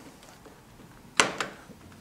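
A sharp click about a second in, then a fainter one, over faint room tone: the blue blade-control lever on a Toro TimeMaster mower's handle being pulled back against the handlebar to engage the blades.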